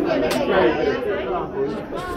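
Several people talking and chattering over one another in a room, with no single clear voice.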